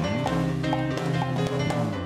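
A live band with bass guitar and drum kit playing an upbeat salsa-style tune as the music for a game show's 30-second countdown clock.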